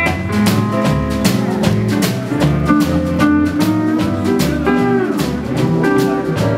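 Fender steel guitar playing sliding notes over a swing band of drums, bass, guitar and piano with a steady beat. One note glides down late on.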